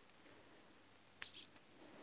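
A LiPo battery's yellow XT60 plug being pushed into the ESC's connector: one short, sharp snap a little over a second in, then a small tick.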